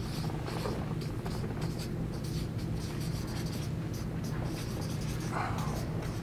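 Marker pen writing on flip chart paper: a run of short scratching strokes as a line of words is written.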